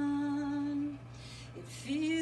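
A woman singing unaccompanied holds one long, steady note, which stops about halfway through. After a short gap, the next phrase starts right at the end.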